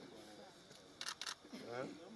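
Voices of a small group talking during greetings, with a quick run of two or three camera shutter clicks about a second in.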